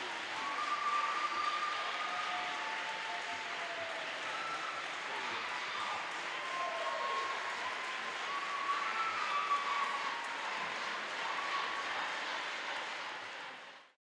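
Audience applauding, with voices calling out over the clapping; it fades out near the end.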